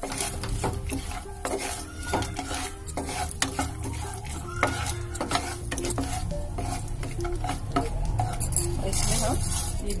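Almonds and cashews being stirred in a nonstick frying pan: a spatula scrapes and taps against the pan and the nuts clatter over a light sizzle. Near the end there is a brief rush as melon seeds are poured in.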